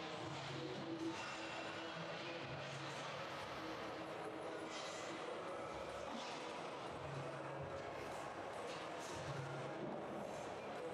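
Quiet gym ambience, with faint, indistinct voices in the background.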